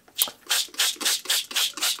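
Trigger spray bottle squirted about seven times in quick succession, a short hiss with each squeeze, wetting a sharpening surface.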